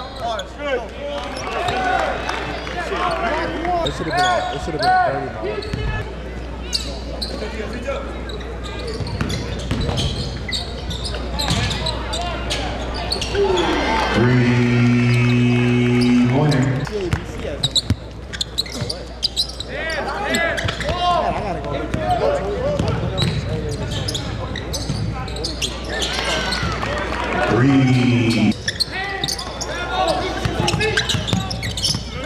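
Live gym sound of a basketball game: a ball being dribbled on the hardwood, shoes squeaking on the court, and voices of players and spectators. About halfway through, a loud steady tone is held for about three seconds, and a shorter one comes near the end.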